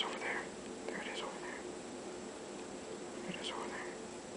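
Faint whispered voice: three short, breathy utterances over a low steady room hum.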